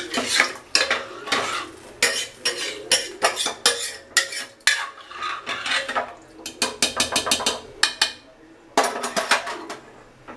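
A spoon stirring rice and water in a stainless steel pressure cooker, scraping and clinking against the pot in quick irregular strokes, with a brief pause shortly before the end.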